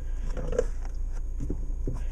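A 2006 Volkswagen Jetta 2.5's engine idling, heard from inside the cabin as a steady low hum, with a few faint clicks from the five-speed manual gear lever being moved.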